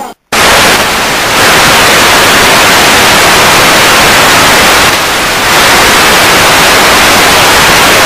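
Loud, steady hiss of analog television static from a CRT set showing snow on a dead channel. It starts abruptly after a brief silence and cuts off suddenly near the end.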